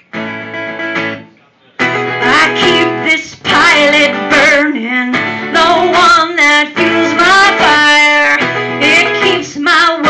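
A woman singing live to her own strummed acoustic guitar. The music drops away briefly about a second and a half in, then voice and guitar come back in full.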